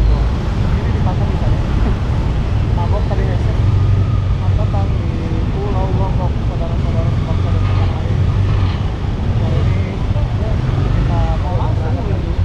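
Steady low engine rumble of vehicles and the ship, with indistinct voices of people talking on and off over it.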